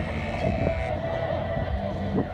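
Rodeo arena ambience: crowd noise and public-address sound, with a steady mid-pitched tone held underneath.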